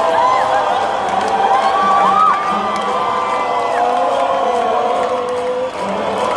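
Large crowd of football fans cheering, shouting and whooping together, many voices at once, loud and unbroken.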